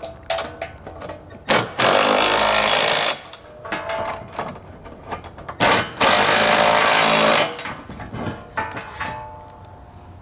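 Cordless impact wrench with a 3/4-inch socket running in two bursts of over a second each, snugging down the trailer hitch's bolts and nuts against the vehicle frame. Clicks and rattles of the socket and hardware come between the bursts.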